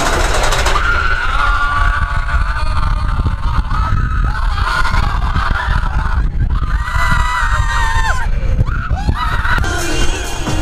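Roller coaster riders screaming and yelling over the steady low rumble of the moving ride, with long held screams near the start and again near the end.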